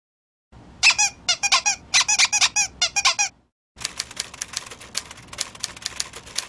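Quick runs of short, high-pitched squeaks, each a little falling chirp, for about three seconds. After a short silence comes a fast, uneven run of light dry clicks.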